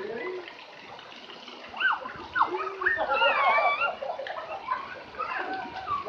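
Children's high voices calling out, loudest from about two to four seconds in, over a steady wash of splashing pool water.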